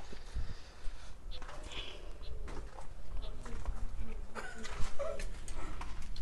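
A few faint, short animal calls, mostly in the second half, over steady low background noise.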